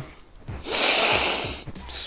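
A person sniffing a piece of gum hardwood up close, one long inhale through the nose starting about half a second in and lasting about a second.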